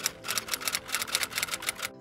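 Typewriter sound effect: a rapid, even run of key clicks, about seven or eight a second, over faint held tones.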